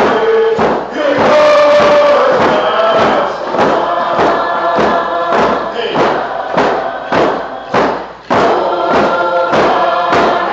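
A group of voices singing a song together in unison over a steady drum beat, about two strikes a second. The singing drops away briefly a little after eight seconds in, then comes back in.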